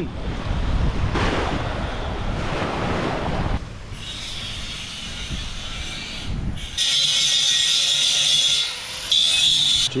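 Wind buffeting the microphone for the first few seconds, then an electric angle grinder working a welded steel frame: a steady high whine in two stretches near the end, with a brief pause between them.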